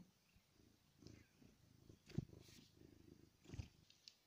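Domestic cat purring faintly close to the microphone. Two soft bumps, about two seconds in and near the end, come as it brushes against the camera.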